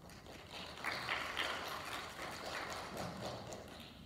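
Audience applauding, swelling about a second in and fading toward the end.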